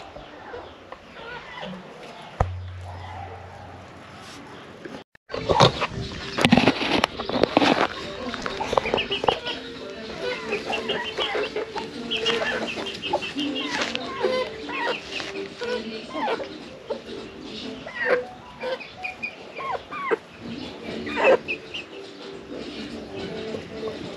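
Domestic chickens clucking and calling. The calls start thick and busy about five seconds in, just after a brief drop to silence, and go on to the end; the first few seconds are quieter.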